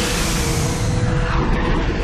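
Aircraft passing, a loud rushing roar whose hiss dulls after about a second, laid over music holding steady notes.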